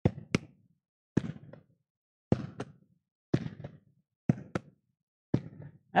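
A ball rallied back and forth, bouncing on a hardwood gym floor and struck with open hands. The knocks come mostly in quick pairs, a bounce and then a hand strike, about once a second, each with a short ring.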